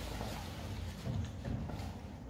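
An American bully eating a piece of food off the floor: chewing and mouth sounds, with a couple of soft low thumps a little after a second in.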